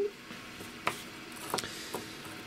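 A few light clicks and taps from handling things on a workbench, three short ones spread over two seconds, over a low steady hiss.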